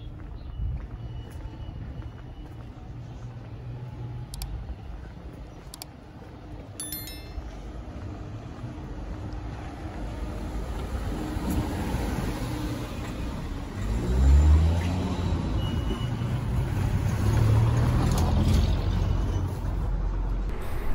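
A motor vehicle's engine running close by in a street, getting louder through the second half, with a rising engine note about two-thirds of the way through as it speeds up.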